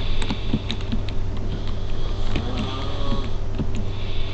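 Keystrokes on a computer keyboard: a scattered handful of sharp clicks while a short word is typed, over a steady low electrical hum.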